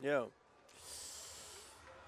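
A short spoken 'yeah', then about a second of breathy hiss of air close to a microphone, starting abruptly less than a second in and fading out before the next words.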